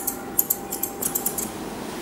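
Grooming scissors snipping the hair over a West Highland white terrier's eyes: a quick run of small, crisp snips that stops about one and a half seconds in.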